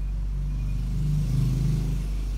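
A low rumble that swells about half a second in, is loudest just past the middle and eases near the end, over a steady low hum.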